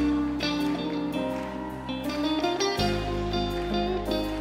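Live pop band playing a song's intro, led by plucked guitar over sustained chords; a deeper bass note comes in about three seconds in.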